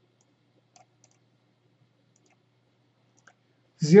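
A few faint, short computer mouse clicks, spread apart, with a voice starting just before the end.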